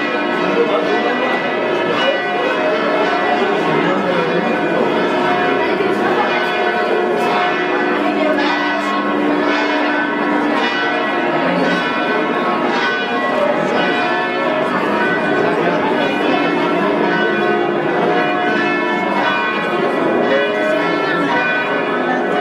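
Church bells ringing in a continuous peal, with many strikes overlapping at different pitches.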